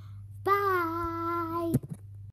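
A boy's voice holding one sung note for just over a second, the pitch dipping slightly, then cut off sharply.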